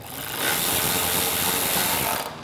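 Cordless drill-driver running steadily, driving in a fuel-tank mounting screw.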